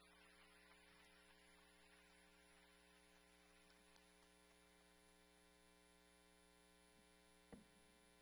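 Near silence: a steady electrical mains hum in the audio feed, with one short faint knock near the end.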